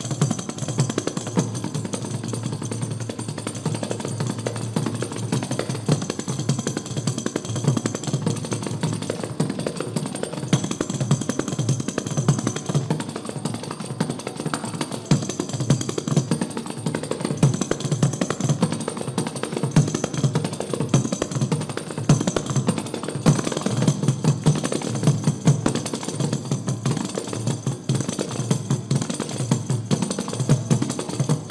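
Kanjiras, South Indian frame drums with a single jingle, played in a fast, dense, continuous rhythm: quick bass strokes with a jingle shimmering above them.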